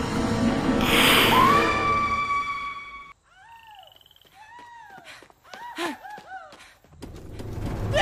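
Animated-series sound effects: a loud noisy stretch with a held high tone for the first three seconds, then several seconds of soft bird chirps, then a low rumble swelling near the end as a giant scorpion monster (a Deathstalker Grimm) bursts out of a cave.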